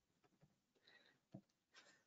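Near silence: room tone, with one faint click a little past halfway through.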